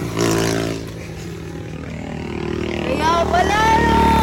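Road traffic going by, a steady low engine hum that grows louder toward the end, with a high, wavering vocal sound from a person over it in the last second.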